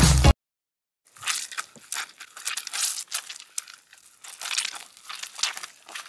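Close, irregular crinkly and sticky crackling from fingers handling a doll's foot coated in a glittery pink material. It starts about a second in and comes in short clusters.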